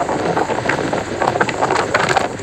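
Strong wind blowing across the microphone: a steady rushing noise with a few small crackling pops.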